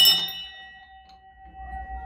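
Small wall-mounted brass bell rung by its rope pull: a quick run of clapper strikes at the start, then a clear ringing tone that slowly fades.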